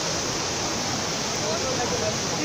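Steady rushing of water pouring over the Trevi Fountain's rock cascades into its basin, with indistinct voices of people talking underneath.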